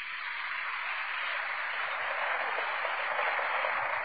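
Audience applause, a steady dense clapping that swells in at the start and holds.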